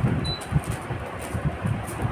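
Uneven low rumbling and thudding noise, in irregular pulses with no clear rhythm.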